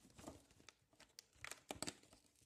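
Faint crinkling and tearing of Playmobil advent calendar packaging being opened by hand, with a cluster of sharp crackles about a second and a half in.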